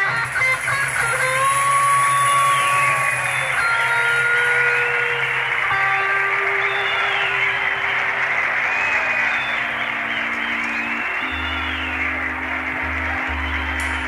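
Early-1970s blues-rock band recording with electric guitar playing sustained notes and bending phrases over the band. Heavy bass notes come in about eleven seconds in.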